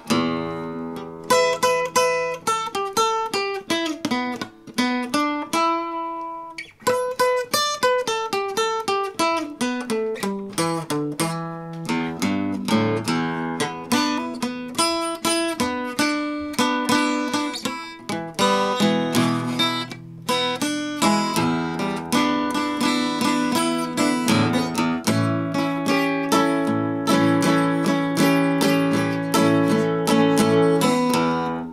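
Mid-1960s Harmony H165 all-mahogany acoustic guitar played with a flat pick, picked single notes and chords up the neck, with a brief break about six and a half seconds in.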